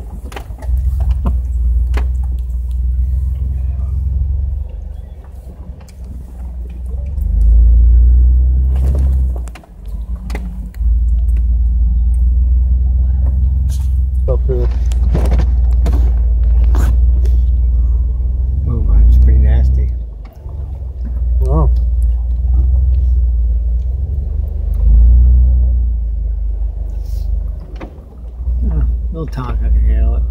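A Jeep's engine running slowly as it crawls over a rough, rocky trail, heard from inside as a deep rumble that swells now and then. Knocks and rattles from the body and suspension come as it rolls over rocks and roots.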